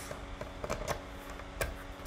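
Locking mechanism at the top of a SnapSafe TrekLite lock box being worked by hand, giving a few sharp clicks as the latch moves.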